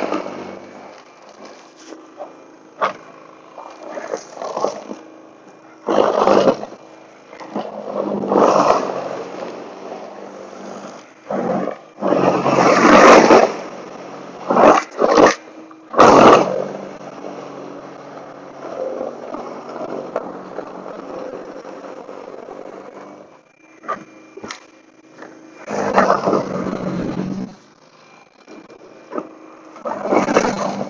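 Toro Power Clear e21 60-volt cordless snow blower running, its electric motor and steel auger humming steadily. Repeated louder surges of rushing, scraping noise come as the auger bites into snow and throws it.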